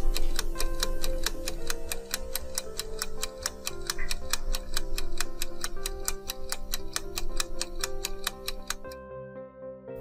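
A clock-ticking sound effect over soft background music, about four ticks a second, marking a countdown timer for thinking time; the ticking stops about a second before the end.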